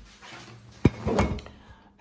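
A single sharp knock a little before the middle, followed by a short clatter.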